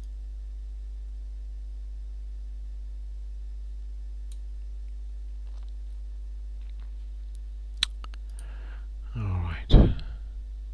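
Computer mouse clicks over a steady low electrical hum: a few faint ticks, then one sharp click just before 8 seconds in. Near the end, a short, loud vocal sound from the person at the computer.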